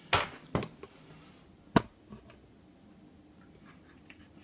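Handling noise from hands and plastic parts: a couple of soft rustles and knocks near the start, then a single sharp click about two seconds in, with quiet room tone in between.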